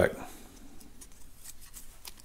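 Steel blades of a Caterpillar valve-clearance feeler gauge set being folded back into their holder: a few faint, light metal clicks and scrapes.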